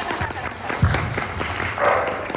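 A room of people applauding, many hands clapping at once.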